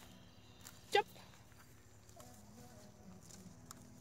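Hand pruning shears snipping elderberry stems, a few faint clicks against a quiet outdoor background, with one short spoken word about a second in.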